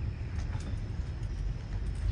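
A low, steady background rumble, with no voice over it.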